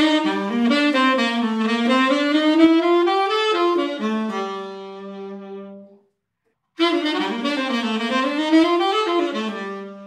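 Tenor saxophone playing a bebop ii–V–I lick in running eighth notes over Dm7–G7–Cmaj7, using the bebop scale's added chromatic note on the G7 and ending on a held low note, the sixth of C major. The lick is played through twice, with a short pause about six seconds in.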